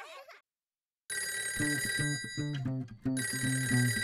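A music track fades out into a moment of silence. About a second in, a cartoon telephone starts ringing in two long rings with a short break between them, over a children's-song backing with a repeating bass pulse.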